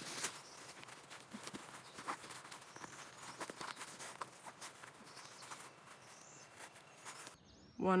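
Faint rustling and small clicks as a trail shoe's laces are pulled tight and tied.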